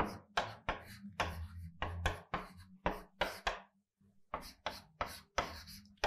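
Chalk on a blackboard while an equation is written: a quick run of sharp taps and short scrapes, several a second, with a brief pause a little past the middle.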